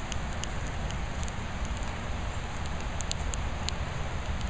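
Steady outdoor noise with a low rumble and a hiss, broken by scattered light crackles and ticks.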